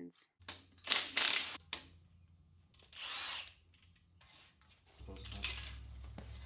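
A hand-held power tool run in three short bursts, about two seconds apart, over a low steady hum, while cylinder heads are being unbolted from a V8 engine block.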